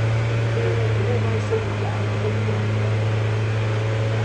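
Hyundai Sonata four-cylinder engine revved up just before and held at a steady raised speed, a constant hum. The throttle is held to push more coolant through a radiator that the mechanic judges clogged with rust, the cause of the overheating.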